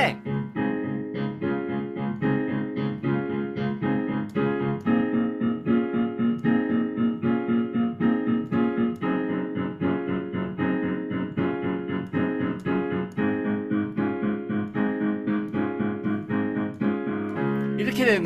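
Digital piano playing a chord progression in steady repeated chords, with the harmony changing every few seconds. It moves from C toward G while the bass stays on C.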